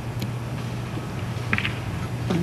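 Steady low hum and hiss of an old television studio recording during a pause, with a faint short sound about one and a half seconds in.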